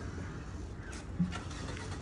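Quiet outdoor background: a steady low rumble, with a short faint sound about a second in.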